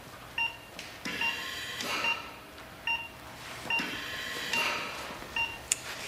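Operating-theatre patient monitor beeping a short tone with each heartbeat, evenly a little more than once a second.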